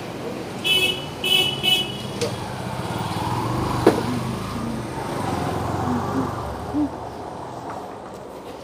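A vehicle horn honks three times in quick short beeps, then a motorcycle engine swells as it passes close by, with one sharp click about four seconds in.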